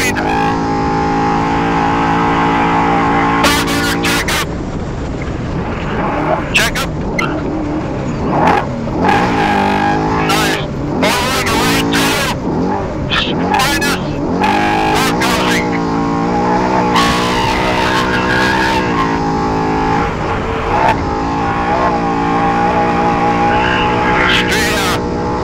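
Onboard sound of a Trophy Truck's V8 engine running hard at race speed over desert dirt, its pitch rising and falling with throttle and gear changes, over a steady high whine. Repeated short bursts of rushing noise come through at irregular moments.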